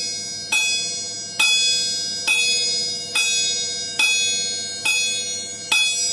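Pair of chappa, small Japanese brass hand cymbals, struck edge to edge with a light twisting stroke: the soft 'chin' open stroke, played weaker than jan and chan. Seven even strikes about a second apart, each ringing bright and high and fading before the next.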